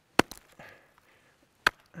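Ice axe picks striking into water ice: two sharp thwacks about a second and a half apart as the climber re-swings for a solid placement, the first with a smaller knock right after it.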